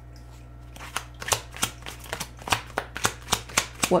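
A deck of oracle cards being shuffled by hand: a quick run of crisp card slaps, about four a second, starting about a second in.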